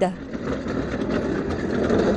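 Mine locomotive hauling a train of loaded coal wagons, a steady running noise.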